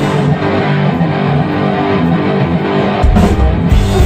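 Live rock band with loud electric guitar; for the first three seconds the low end drops away and the guitar carries the music nearly alone, then the drums and bass come back in about three seconds in.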